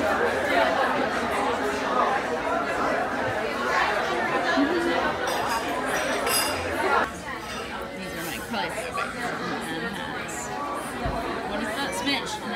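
Indoor chatter of many diners talking at once, a steady hubbub of overlapping voices that drops a little quieter about seven seconds in.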